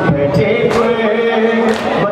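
Men chanting a noha, a mourning lament, with the reciter's voice leading and others joining in, held notes rising and falling. About once a second comes a sharp slap of hands beating on chests (matam) in time with the chant.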